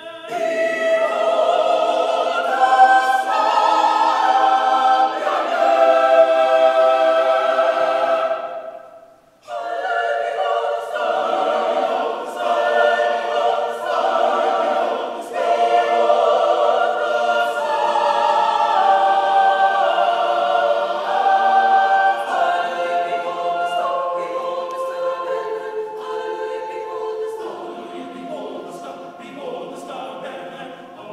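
Mixed choir of men and women singing, breaking off for a moment about nine seconds in, then resuming and growing softer near the end.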